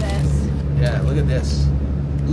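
A steady low mechanical hum, like an engine or motor running, with brief indistinct talking about a second in.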